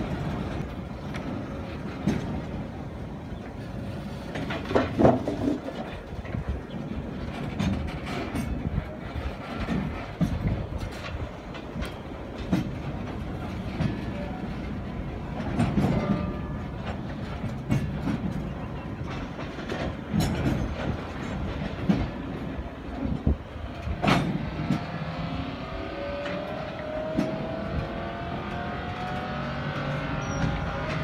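Freight train of gondola cars rolling slowly past, with wheels clacking over the rail joints and irregular metallic knocks and clanks from the cars. Near the end a rising whine with several tones joins in.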